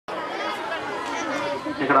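Only speech: several voices chattering in a hall, then near the end a man starts speaking louder into a microphone.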